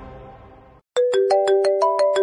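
Background score fading out, then a quick rising run of short chime-like notes, about six a second, like a mobile phone ringtone melody.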